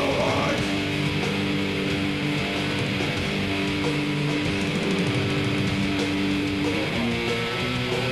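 Heavy metal band playing live: distorted electric guitars hold long, sustained chords that change every second or two.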